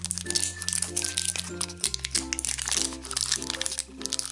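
Crinkling of a clear plastic wrapper as it is peeled off a Mash'ems toy capsule, over background music with repeating chords and a steady bass.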